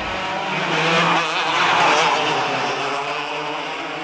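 Racing go-kart engines running at speed, a steady buzz that swells about midway and eases off toward the end.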